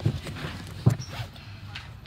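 Steady low rumble of a moving bus heard from inside the cabin, with a single sharp knock about a second in and faint voices.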